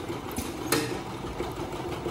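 Automatic jar film-sealing machine running: a steady mechanical hum from its drive and conveyor, with two light clicks in the first second.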